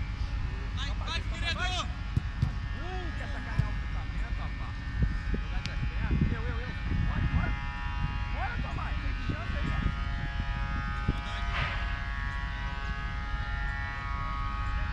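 Football players' distant shouts and calls across the pitch, in short bursts, over a steady low rumble and a faint steady hum.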